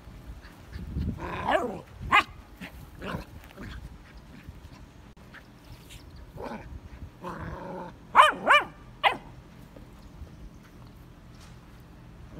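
Vizsla puppy barking in short, scattered bursts, with three loud, high yapping barks in quick succession about eight seconds in.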